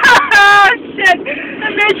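Voices talking inside a moving car, over the car's engine and road noise.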